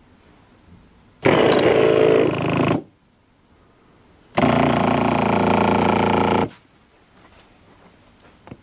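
Two bursts of a recorded animal-like sound, played through a small loudspeaker; the first lasts about a second and a half, the second about two seconds, and each starts and cuts off abruptly.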